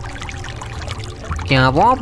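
Steady flowing river water, a trickling ambience. A voice starts speaking about one and a half seconds in.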